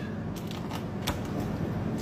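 Knife cutting through a raw chicken along the backbone and rib bones, giving a few short, sharp clicks over steady background noise.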